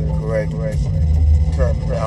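Steady low rumble of a car on the move, heard from inside the cabin, with brief snatches of a voice over it.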